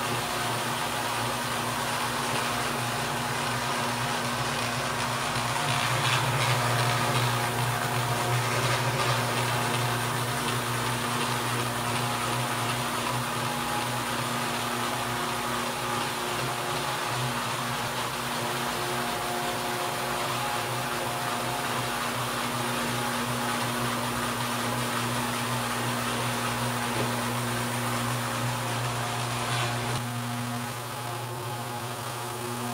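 Electric floor machine running steadily, its motor humming as the pad scrubs a wet terrazzo floor to strip off the old wax. It grows a little louder from about six to ten seconds in.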